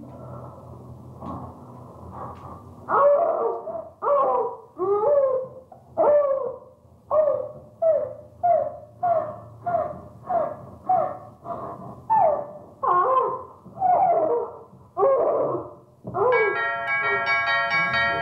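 An animal calls over and over in short cries, each falling in pitch, about one to two a second for some thirteen seconds. Music with steady held notes starts near the end.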